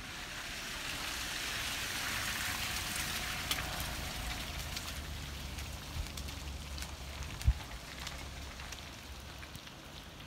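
Wet snow and sleet falling on slushy pavement and hedges: a steady hiss that swells over the first few seconds and then slowly eases, with scattered sharp ticks of drops and pellets landing. About two thirds of the way in there is one loud thump.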